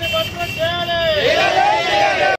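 A group of men shouting slogans together, with loud, drawn-out syllables.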